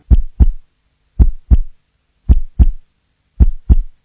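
Heartbeat sound effect: four slow double beats, each a deep lub-dub thump, about one beat a second with silence between.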